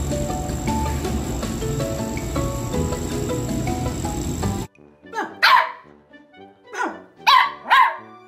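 Background music over a steady noise for the first half, cut off abruptly. Then a small puppy barking: a few sharp, high yaps, each falling in pitch.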